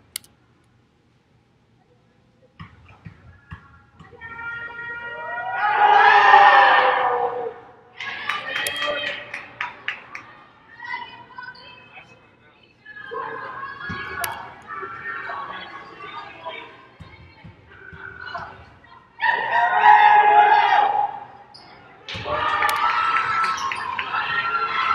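Several voices shouting and cheering from players and spectators in a basketball arena, with a basketball bouncing on the hardwood court. After a quiet opening, the loudest outbursts come about six seconds in and again around twenty seconds.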